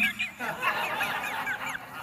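A person laughing in a high voice: a quick run of short notes, each falling in pitch, about five or six a second.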